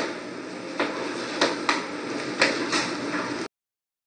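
Steady room noise with a handful of short, sharp knocks or taps, about five of them at uneven intervals, cutting off abruptly to dead silence about three and a half seconds in.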